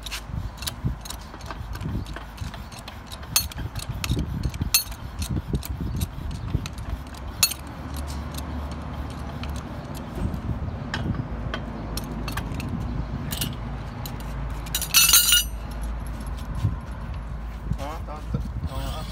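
Steel pipe wrenches working a threaded joint on a BQ double-tube core barrel: a run of metal clicks and clinks as the jaws grip and turn the tube, with a louder metallic clatter about fifteen seconds in.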